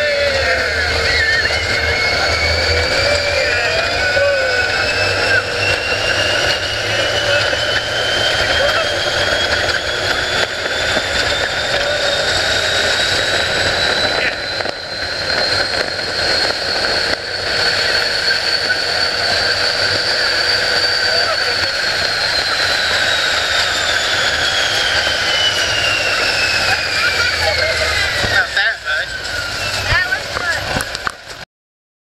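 Open-top ride vehicle running at speed: wind rushing over the microphone, with a motor whine that climbs steadily in pitch for about twenty seconds and then falls away near the end.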